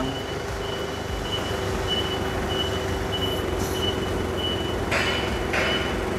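Nissan 2-ton forklift manoeuvring in reverse, its back-up alarm beeping about one and a half times a second over the steady hum of the running engine. A brief hiss comes about five seconds in.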